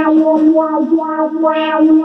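Electric guitar through effects pedals with some distortion, holding one steady sustained note while shorter notes shift over it.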